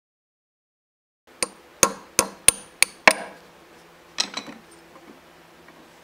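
Mallet blows on parts of an Atlas Craftsman lathe's cast-iron headstock during disassembly, starting about a second in. Six sharp strikes come about three a second, each with a brief metallic ring, followed a second later by two or three lighter taps.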